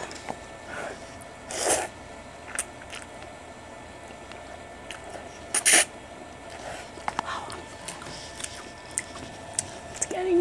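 A person eating spicy carbonara instant noodles: two short slurps, about two seconds in and a louder one near six seconds, with chewing and small clicks in between.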